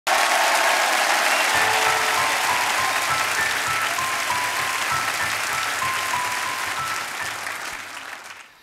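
Studio audience applauding, the clapping dying away gradually toward the end. Under it a band plays a soft intro melody of single held notes.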